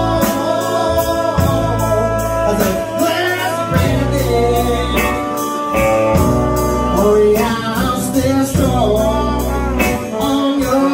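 Live band playing a slow country-soul ballad: a man singing over electric guitar, keyboard, bass and drums.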